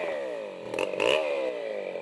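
Chainsaw engine revving up and down: its pitch falls, rises briefly about a second in, then falls again.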